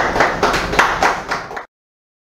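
Hand clapping, a quick even run of about five claps a second, cut off abruptly by an edit into silence about a second and a half in.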